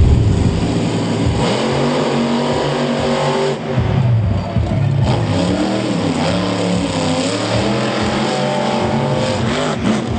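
Monster Jam monster trucks' 1,500-horsepower engines running hard, revving with the pitch rising and falling through the throttle, loudest right at the start.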